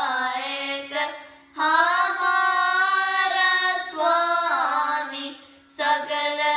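Two children singing Sikh kirtan together: a Gurbani shabad in raag Bhairo, sung in long, held notes. The singing breaks for a breath twice, about a second and a half in and again near the end.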